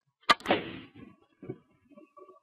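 A carom billiard shot played hard: a sharp click of the cue tip on the cue ball, then at once a louder clack as the cue ball hits the red ball, followed by softer knocks of balls off the cushions.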